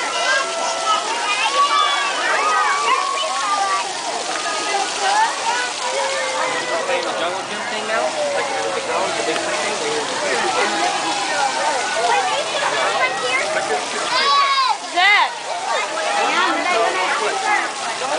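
Many children's voices shouting and chattering at once over the steady hiss and splash of splash-pad water jets. A louder, high child's cry stands out about fourteen seconds in.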